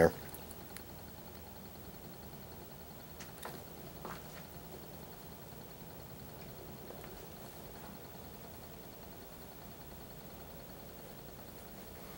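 Experimental bench generator running steadily at low power, a faint low hum with a thin high tone above it. There are two light clicks about three and a half and four seconds in.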